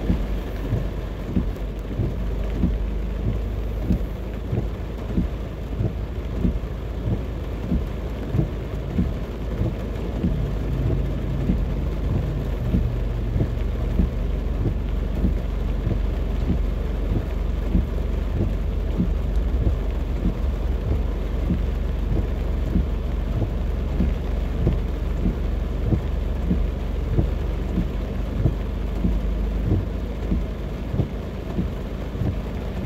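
Heavy rain drumming on a car's roof and windshield, heard from inside the cabin as a dense patter of sharp drop hits over a low steady rumble.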